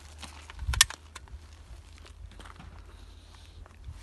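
Unloading an AK-pattern carbine: one sharp metallic click from the action a little under a second in, then a few fainter clicks, over a low steady rumble.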